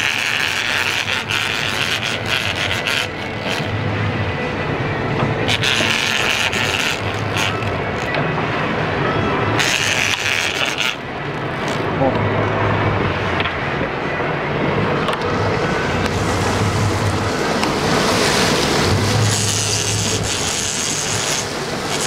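Steady wind and sea noise on an open sportfishing boat, with intermittent rasping from the big-game rod and reel as a hooked marlin is fought.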